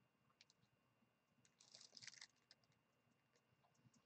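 Faint scratching and ticking of a coloured pencil stroking across Bristol vellum paper, with a short cluster of quick strokes about two seconds in.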